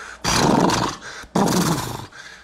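A man imitating a loud pickup truck's exhaust with his voice: two rasping, throaty bursts, each under a second long.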